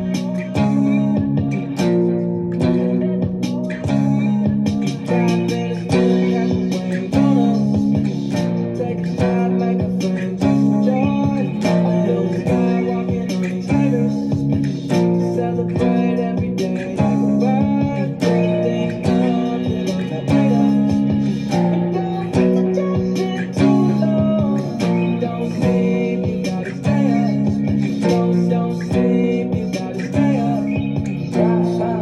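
Electric guitar played clean, strumming three-string power chords on the sixth, fifth and fourth strings through the song's progression (B, D-flat and onward). The chords change every second or two in a steady rhythm.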